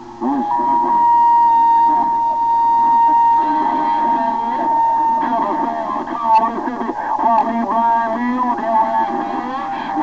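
Yaesu transceiver receiving CB skip on 27.025 MHz through its speaker: several distant stations talk over one another, too garbled to follow. A steady whistle sits over the voices for about the first five seconds.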